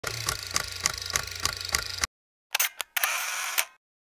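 Camera sound effects: about two seconds of rapid, even clicking, about three clicks a second, then after a short pause two sharp shutter-like clicks and a brief mechanical whir.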